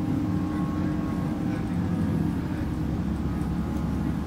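Class 165 diesel multiple unit heard from on board at speed: its underfloor Perkins diesel engine running hard with a steady drone, over the rumble of wheels on rail.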